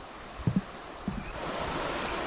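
The River Tweed in flood after heavy rain: a steady rush of fast, deep water that grows louder in the second half, with a couple of soft thumps in the first half.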